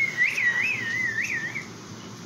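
A warbling whistle: one clear tone that rises and falls in quick scoops for about a second and a half, then stops.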